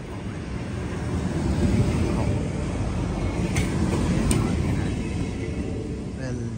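Vy Class 69 electric multiple unit pulling into the station and passing close by, with a steady rumble of wheels on rails that peaks about two seconds in. Two sharp clicks come a little under a second apart, near the middle.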